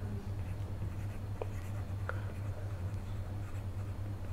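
Faint scratching and tapping of a stylus writing on a tablet screen, over a steady low hum.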